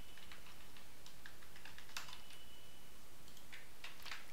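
Computer keyboard typing: a few scattered keystrokes over a steady background hiss, with a brief pause between them.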